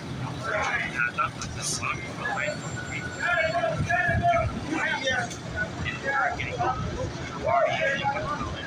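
People's voices calling out unintelligibly, with a few longer held calls, over a steady low background rumble.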